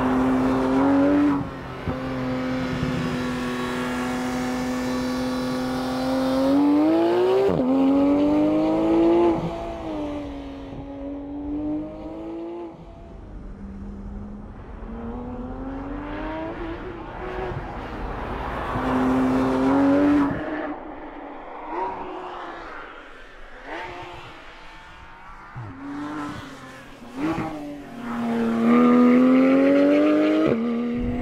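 Porsche 911 GT3 RS flat-six engine being driven hard. Its pitch climbs under acceleration, drops suddenly, then climbs again several times over, with steadier stretches between, and it is loudest as it revs up near the end.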